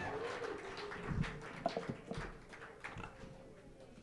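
A small audience's scattered claps and brief calls, dying away.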